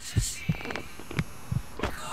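Soundtrack effect of low, regular thumps like a heartbeat, about three a second, over a faint hum.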